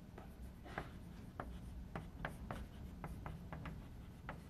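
Chalk writing on a blackboard: a faint, irregular run of short taps and scrapes as letters are chalked in.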